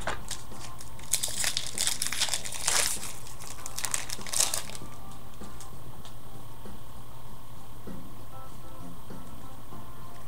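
Plastic wrapper of a baseball card pack crinkling as it is handled and opened. The crinkling runs from about a second in to nearly five seconds in, then gives way to a few faint handling ticks.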